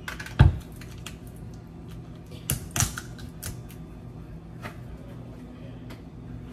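Clicks and knocks of kitchen items being handled and set down on a counter while coffee is made: a heavy thump about half a second in, two sharper knocks near the middle, and scattered small clicks over a low steady hum.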